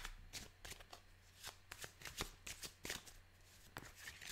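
A deck of tarot cards being shuffled by hand: quiet, irregular flicks and slaps of cards, about three or four a second, the first the loudest.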